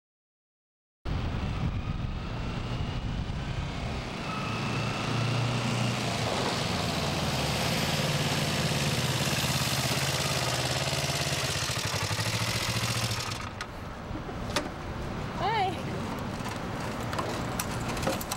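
Motorcycle engine running steadily as the bike is ridden. About two-thirds of the way through it drops away and the engine stops, followed by a few scattered clicks and knocks.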